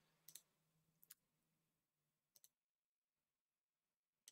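Three faint computer mouse clicks, each a quick double tick of press and release, spread over about two seconds as menu items are selected.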